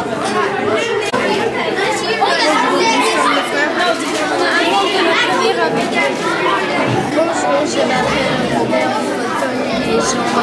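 Overlapping chatter of many voices, children's among them, in a large room, with no single voice standing out.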